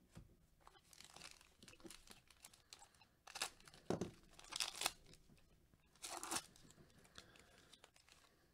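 Foil trading-card pack wrapper being ripped open and crinkled by hand. It comes in several short bursts of tearing, the loudest about three to five seconds in.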